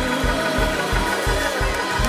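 Live gospel praise band playing: sustained organ chords over a steady low beat of about four pulses a second, with a sung vocal line weaving over it.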